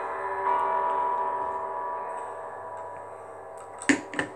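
Soft background music: a sustained, bell-like chord, with a new tone entering about half a second in, slowly fading. A sharp click comes just before the end.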